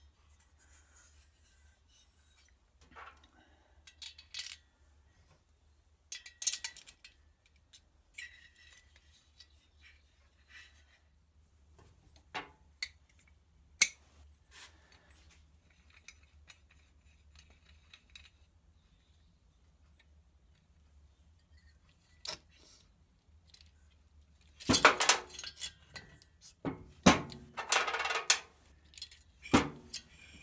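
Scattered metallic clinks and clanks as valve springs, collars and a C-clamp valve spring compressor are handled on a Citroën 2CV cylinder head, with a busier run of louder clanks in the last five seconds.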